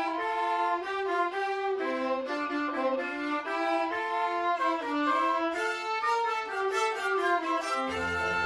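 A youth orchestra's violin section playing a busy passage of short bowed notes, several a second, with no low strings beneath.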